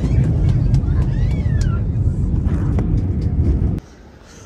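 Steady low rumble of an airliner's engines and airflow heard inside the passenger cabin, with faint voices over it. It cuts off abruptly near the end.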